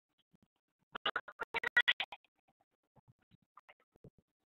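Garbled, choppy audio from a participant's open microphone in an online conference. About a second in there is a burst of rapid stuttering fragments lasting roughly a second, with faint scattered crackles around it. The audio is breaking up rather than coming through, and the moderator guesses it may be his class itself.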